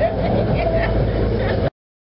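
Indistinct voices over a steady low rumble, cutting off suddenly into silence near the end.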